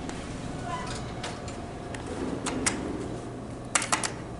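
Steady hum of a building's indoor ambience with a few scattered sharp clicks, then a quick cluster of clicks near the end as an elevator hall call button is pressed.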